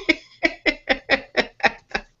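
A person laughing in a rapid run of short 'ha' bursts, about four a second.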